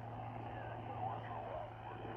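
Faint, indistinct voice coming through a radio receiver over a bed of hiss, with a steady low hum underneath.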